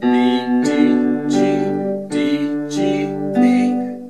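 Casio electronic keyboard on a piano-pad voice playing a rising G-major arpeggio, B–D–G and then D–G–B. Each note is held and rings into the next.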